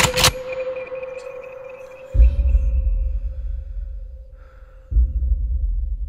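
Movie trailer sound design: a sharp hit at the start, then a single held tone slowly fading, punctuated twice by deep booming low hits about three seconds apart.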